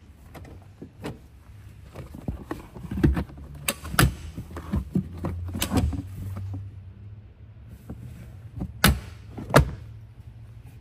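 Sharp clicks and knocks of a pickup's rear-cab trim being handled, the rear seat cushion and the under-seat storage compartment and its lid, over a low steady hum. The knocks come irregularly, the loudest about four seconds in and two close together near the end.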